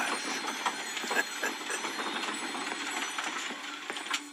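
Sound effects from a Santa video message playing through a speaker: a steady rattling, clattering noise scattered with irregular clicks.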